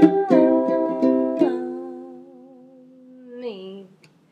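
Ukulele strummed in a few quick chords, then the last chord left to ring out and fade. A voice hums a wavering held note over it that drops in pitch near the end.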